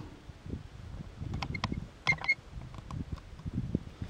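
Faint handling noise from a camera on a tripod being repositioned: soft rustling and a few light clicks, with a couple of short high squeaks about one and a half to two seconds in.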